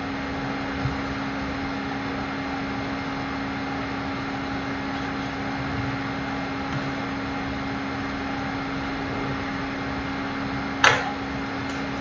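Steady background hum and hiss, like a fan or air conditioning running, with one sharp knock about eleven seconds in.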